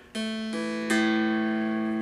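Baritone mountain dulcimer with a Honduras mahogany body, tuned A-E-A with three strings in play: three strings plucked one after another, about a third of a second apart, then ringing on together. The last pluck is the loudest.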